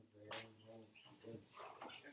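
Faint, indistinct talking: low voices murmuring, too soft to make out words.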